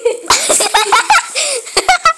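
Children laughing in quick, breathy bursts, loud and close to the phone's microphone.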